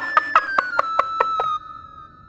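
Comedy sound-effect sting from the show's background score: about eight quick, evenly spaced knocks, roughly five a second, over a whistle-like tone that slides slowly downward. The tone holds on faintly after the knocks stop.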